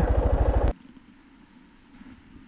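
Motorcycle engine running with a steady, even low pulse, which cuts off suddenly about three-quarters of a second in, leaving only faint background noise.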